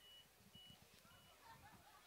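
Near silence, broken by three faint, short, high beeps about half a second apart in the first second or so, with faint distant voices underneath.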